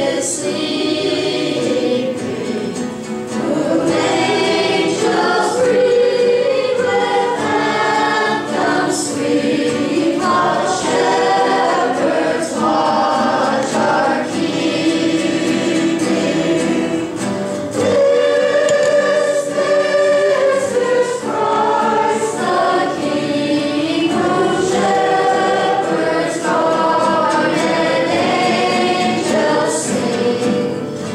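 A group of voices singing a Christmas carol in unison, accompanied by a nylon-string classical guitar and a steel-string acoustic guitar.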